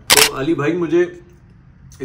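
A short, sharp click, the loudest thing here, just after the start, followed by a man's voice speaking for under a second, then quiet for the last second.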